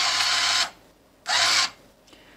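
ICT BL-700 bill acceptor's motor drawing in a one-dollar bill: a run of about a second, then a shorter run about a second later, as the bill is taken in and accepted.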